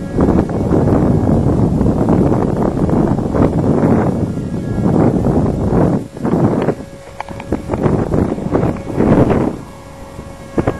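Wind buffeting the microphone in loud, uneven gusts. It eases about six seconds in, and a faint steady hum shows through the lull before another gust near the end.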